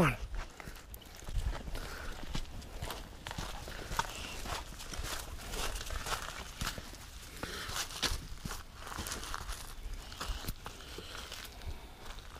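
Footsteps of a person and a dog walking over grass and then a paved driveway: irregular soft scuffs with a few sharper clicks and knocks.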